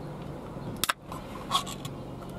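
Ring-pull lid of a small Vienna sausage can cracking open with a sharp click, followed by a few lighter clicks and scrapes as the metal lid is pulled back.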